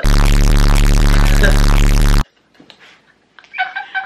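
Loud, harsh electronic buzz with static, a sound effect dropped in during editing, lasting about two seconds and cutting off suddenly.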